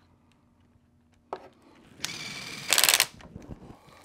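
Cordless power screwdriver driving a small hex cap screw into the aluminium knuckle of an RC motorcycle's rear suspension. It runs for about a second, starting about two seconds in, and gets louder in a short, rapid rattle just before it stops. A single click comes just over a second in.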